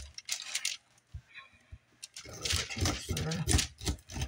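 Kitchen knife slicing the rind off a whole pineapple: crunchy cutting strokes with sharp clicks, a quieter pause about a second in, then a busier run of cutting in the second half.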